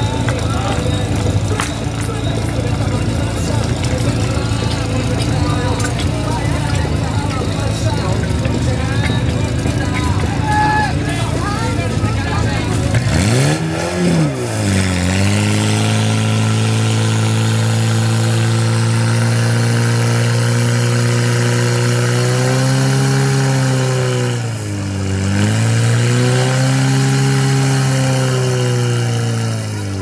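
Portable motor fire pump engine running. About 13 seconds in it revs up sharply and then holds at high revs, driving water through the hoses to the branch nozzles. About 25 seconds in the revs dip briefly and then climb back.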